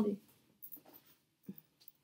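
Faint rustling and handling noises as a dropped card is picked up off the floor, with one light knock about one and a half seconds in.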